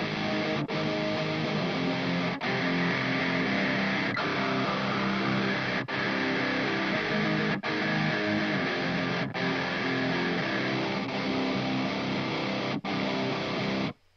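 Distorted electric rhythm guitars from a pop-punk demo recorded through a Two Notes Captor X load box, played back as a chugging riff with brief stops about every second and a half. A narrow EQ boost is swept through the mids to hunt down an unwanted ringing frequency.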